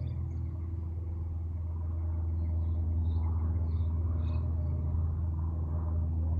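Steady low rumble, growing a little louder about two seconds in, with a few faint high chirps in the middle.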